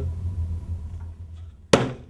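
A steady low hum, then a single sharp impact near the end that dies away quickly.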